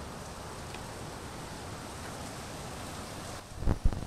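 Steady rushing noise of a river in flood. Two low thumps near the end.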